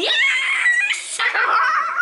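Child's high-pitched, excited cheer of "Yeah!", drawn out into a squealing, giggly voice for nearly two seconds and dropping away near the end.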